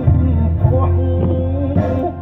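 Music with a deep sustained bass under a wavering melodic line.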